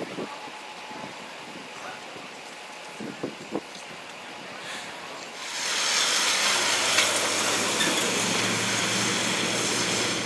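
A few faint knocks over low street ambience. About halfway through, an emergency vehicle's engine comes in close by and stays steady: a low engine hum under a loud rushing noise.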